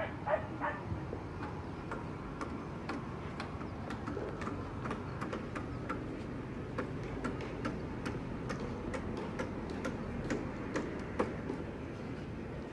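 Footsteps on the wooden sleepers of an old railway bridge: sharp clicks about two a second, at walking pace, over a steady low rumble.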